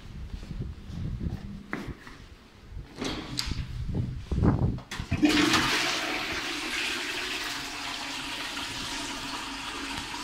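Toilet flushing: a sudden loud rush of water starts about five seconds in and carries on steadily, easing a little. Before it come a few knocks and handling noises.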